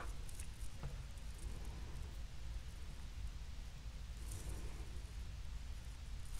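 Faint handling sounds of fingernails peeling a thin skin of dried hot glue off a small plastic bottle, with a small click about a second in and a soft rustle near the end, over a low steady room hum.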